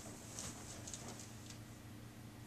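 Faint crinkling and rustling of the paper sheet on a treatment table's face rest as a person lying face down turns her head, over a low steady hum.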